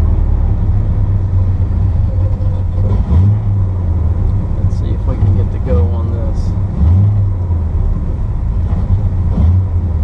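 1975 Corvette's small-block V8 idling, heard from inside the cabin as a steady low drone that swells briefly about three seconds in and again near seven seconds. The engine is still warming up and not yet settled into a smooth idle.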